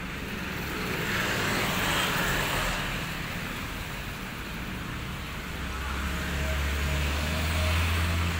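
Passing road traffic: a vehicle's rushing noise swells about a second or two in. A low engine rumble then builds through the second half.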